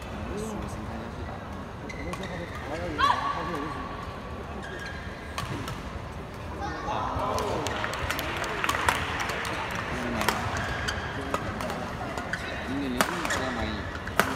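Badminton arena crowd noise with nearby spectators talking, and, in the second half, a run of sharp racket hits on the shuttlecock during a rally while the crowd noise swells.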